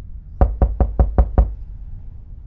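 Six quick, evenly spaced knocks on a door, about a fifth of a second apart, lasting about a second.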